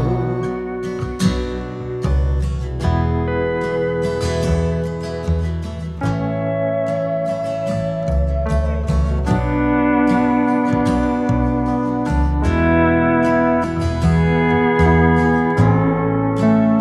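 Instrumental break of a song between sung verses: a lead guitar plays sustained notes that slide in pitch, over rhythm guitar and bass.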